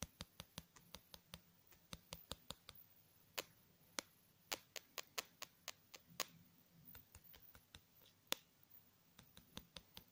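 Close-up ASMR tapping on a small black card: dozens of crisp, sharp clicks, irregular, sometimes in quick runs of three or four a second.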